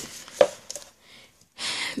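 Books being handled on a bookshelf: a sharp knock about half a second in as a book meets the shelf or its neighbours, a few light taps, then a brief sliding rustle near the end.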